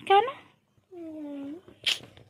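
A child's voice: a brief spoken question, then a drawn-out whine about a second in, and a short sharp high sound near the end.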